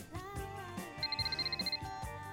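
Background music with a telephone's electronic trill ring: one short burst of rapid high pulses about a second in.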